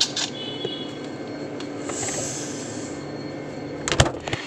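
Refrigerator humming steadily with its door open, then a sharp knock near the end as the door closes.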